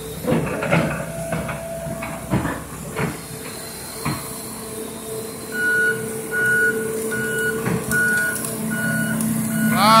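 Excavator running with a steady hum, with clunks and cracks in the first few seconds as the bucket works the sticks of a beaver dam. About halfway through, the machine's warning alarm starts beeping, evenly spaced at a little more than one beep a second.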